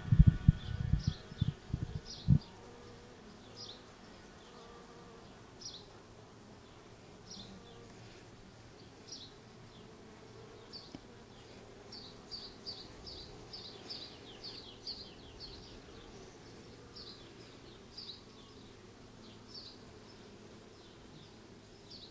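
Honeybees buzzing around an open mating nuc as frames covered in bees are lifted out, a faint steady hum. A few loud bumps from handling come in the first two seconds. Short high chirps repeat over the hum, in a quick run near the middle.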